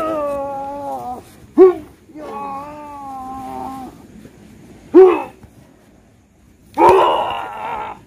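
Men crying out in a mock fight: drawn-out wailing cries, two short sharp shouts, the loudest, about one and a half and five seconds in, and a loud rough yell near the end.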